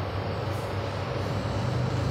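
Steady background hum with an even hiss: the room tone of the scene, with no distinct event.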